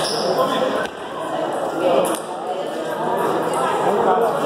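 Indistinct voices echoing in a large hall, with a few sharp clicks of table tennis balls bouncing.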